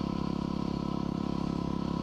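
2010 Yamaha WR250R's 250 cc single-cylinder four-stroke engine running at a steady, light cruise, its pitch holding level, heard from the rider's helmet.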